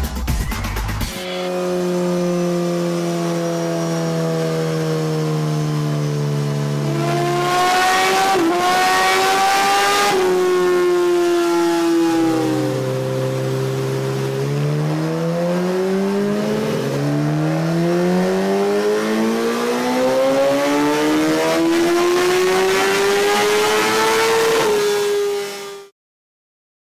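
Kawasaki ZX-10R superstock inline-four engine run up on a dynamometer. It holds a steady speed, then climbs in pitch and drops back, then makes further rising pulls; the last is a long climb that cuts off suddenly near the end. A moment of music plays in the first second.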